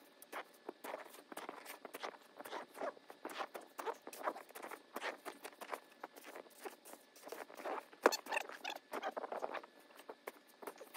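Snow shovelling played at five times speed: a quick, uneven run of short shovel scrapes and crunches in deep snow, with a sharp knock about eight seconds in.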